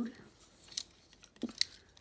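A few short, light clicks and taps of a plastic Transformers Animated Blitzwing toy being handled, about four in all, spread over the second half.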